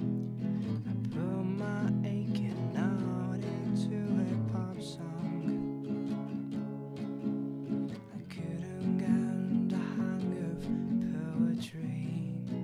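Acoustic guitar strumming chords in a steady rhythm.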